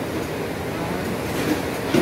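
Steady rushing background noise, with faint voices in the background.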